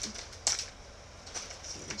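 Handling noise as a set of chipboard butterfly pieces is picked up and pulled out: one sharp click about half a second in, then faint rustling.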